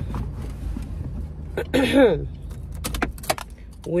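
Keys jangling and clicking in a car cabin over a low steady hum, with a few sharp clicks late on.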